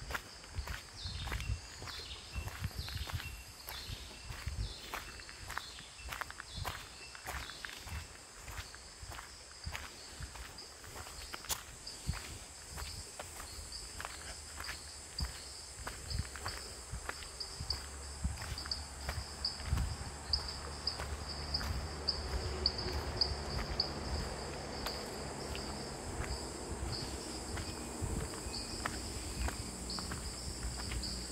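Footsteps at a steady walking pace on a gravel-and-dirt track, with insects buzzing in a high, pulsing chorus that grows stronger in the second half. A low rumble builds up after about twenty seconds.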